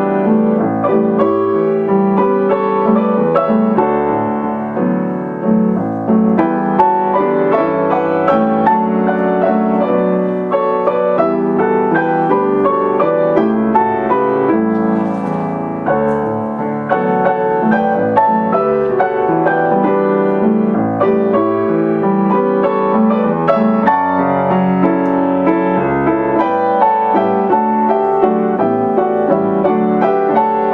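A grand piano played four hands: a duet with Latin-style rhythms and 7th and 9th chord harmonies, played continuously with many overlapping notes.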